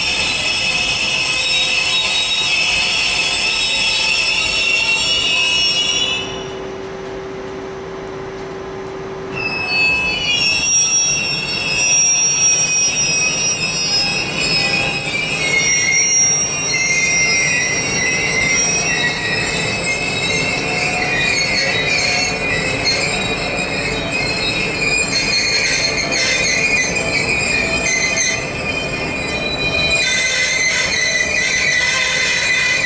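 Intermodal freight train of pocket wagons loaded with semi-trailers rolling slowly past, its wheels squealing in a chorus of high-pitched tones. About six seconds in, the squealing drops out for roughly three seconds, leaving a lower steady tone, then comes back and sags slightly in pitch.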